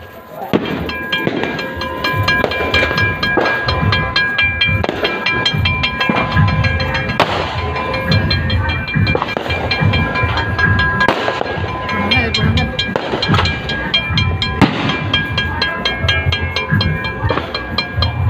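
Firecrackers crackling continuously in rapid strings, with louder single bangs every few seconds, over music.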